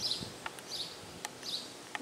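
A small bird chirping steadily in the background, a short high note about every three-quarters of a second, with a few faint clicks in between.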